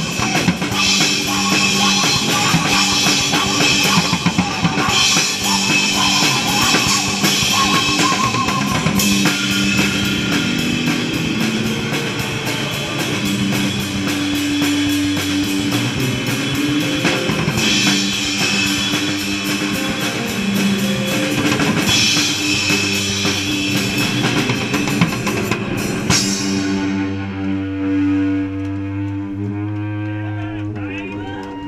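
Live punk rock band playing loudly: a drum kit close by with crashing cymbals and bass drum, and electric guitar. Near the end the drums and cymbals stop suddenly and held notes ring on.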